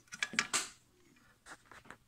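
Handling noise: a few light clicks and knocks in the first half-second, then a couple of fainter taps about a second and a half in, as a graphics card is picked up and moved about on a silicone work mat.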